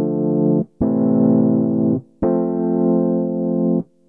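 Three held chords in C major, played from the pads of an Ableton Push 2 on a keyboard instrument sound. The same three-pad shape is moved to a new spot for each chord, and each chord is held for about a second before being released.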